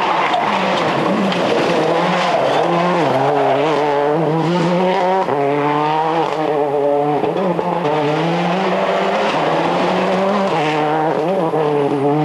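Ford Focus WRC rally car's turbocharged 2.0-litre four-cylinder engine driven hard, its pitch climbing and dropping again and again as it revs up through the gears and lifts into the bends.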